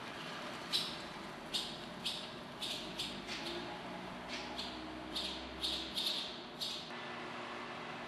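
Barn swallows giving short, sharp high chirps, about a dozen at irregular intervals over some six seconds.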